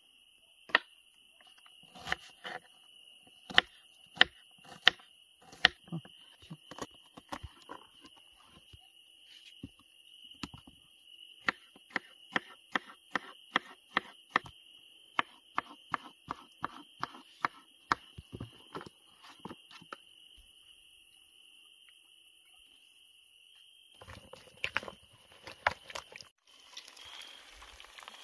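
Knife chopping a courgette on a wooden cutting board: sharp taps, irregular at first, then a quick even run of about two to three chops a second, pausing before picking up again. A steady high trill of crickets runs underneath. Near the end, eggs and sausages sizzle in a frying pan on a wood stove.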